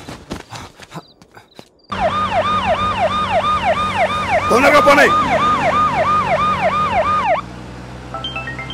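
Electronic siren sounding in a fast yelp, its pitch sweeping up and down about three times a second. It starts suddenly about two seconds in and cuts off abruptly shortly before the end.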